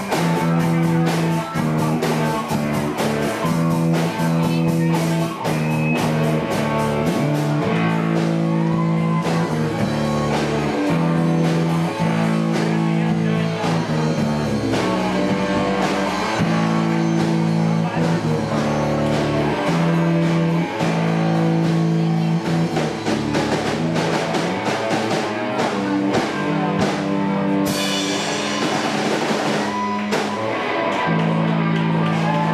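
Live rock band playing: electric guitar chords over a drum kit, with a singer on the microphone, recorded from the audience.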